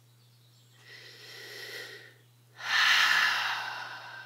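A woman taking a deep breath: a quiet breath in lasting about a second and a half, then, after a short pause, a louder breath out that fades away slowly.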